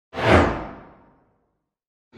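Whoosh sound effect of a video logo intro: a single swoosh with a deep low end that starts suddenly, peaks about a third of a second in and fades out within about a second, its hiss sinking in pitch as it dies away.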